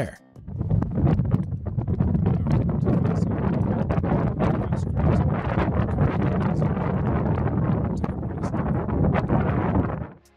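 Natural gas flames burning across the floor of the Darvaza gas crater: a steady, low rushing noise that starts about half a second in, with wind on the microphone.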